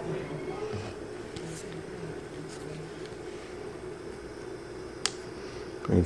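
Faint handling sounds as a hookup wire is worked into a breadboard's screw binding post, over a steady low hum, with one sharp click about five seconds in.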